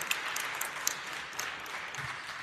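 Tail end of audience applause in an auditorium, thinning out to scattered single claps.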